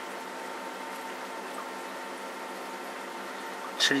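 Steady background hum and hiss with a few faint constant tones, unchanging throughout, with no distinct knocks or scraping.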